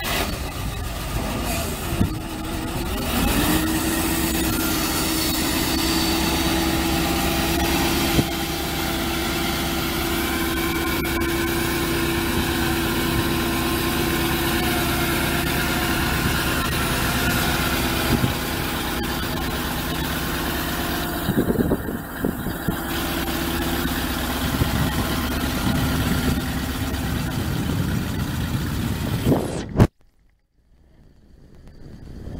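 International 446 V8 engine of a grain truck running. About three seconds in it rises to a higher, steady speed and holds there while the hydraulic hoist lifts the grain box. Near the end the pitch steps down slightly, with a few knocks along the way, and the sound then cuts off suddenly.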